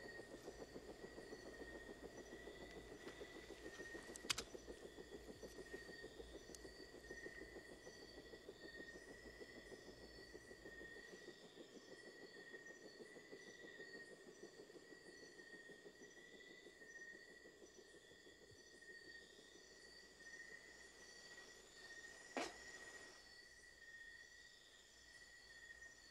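Near silence: faint steady background ambience with a thin, unwavering high tone, broken by a brief click about four seconds in and another near the end.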